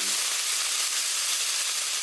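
A steady hiss of noise, a sound effect laid under an animated logo intro, with nothing in the low end; it cuts off abruptly at the end.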